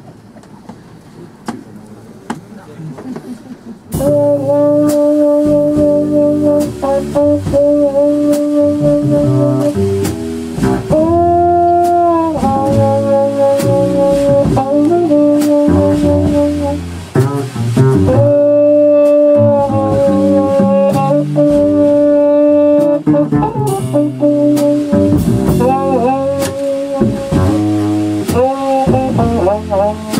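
Jazz trumpet, muted, holding long steady notes and short phrases over walking double bass and drums. The band comes in loudly about four seconds in, after a quiet start.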